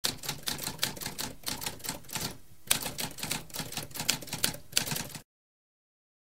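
Typewriter keys clacking in a quick run of keystrokes, with a short pause about halfway through, stopping abruptly a little after five seconds.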